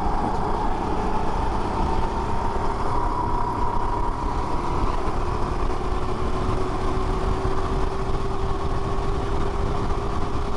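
Rental racing kart's small single-cylinder engine heard onboard at full throttle down the straight, its pitch climbing slowly and steadily as the kart gathers speed, with a rushing noise of wind and vibration on the camera.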